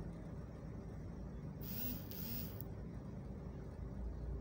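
Steady low rumble of street traffic, with a sharp hiss starting about one and a half seconds in and lasting about a second.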